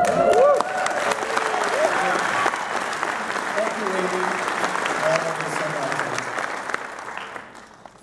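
Audience applauding in a large hall, with a few whoops and calls in the first two seconds; the clapping dies away near the end.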